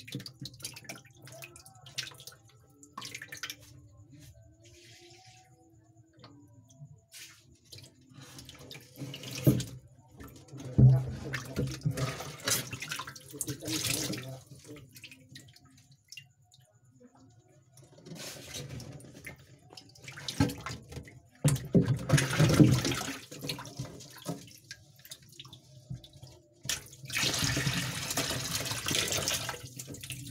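Water splashing and sloshing in an aquarium, in irregular bursts with quieter gaps between.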